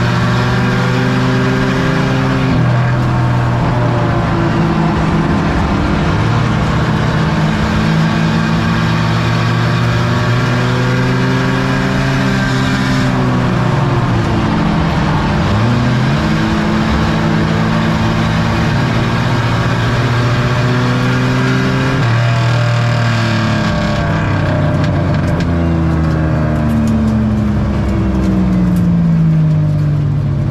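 Race car engine heard from inside the cockpit, running hard at racing speed. Its pitch holds, then drops and climbs again several times as the throttle is lifted and reapplied, with a long falling sweep near the end.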